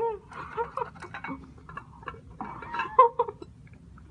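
Short muffled laughs and vocal noises from two girls eating biscuits off plates without using their hands, mixed with small clicks and crunches. The sounds come in scattered bursts, busiest near the start and again around three seconds in.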